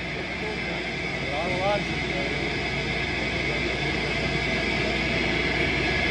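Steady background noise of a small bar room, a hiss and hum with indistinct voices and one short voice fragment about a second and a half in.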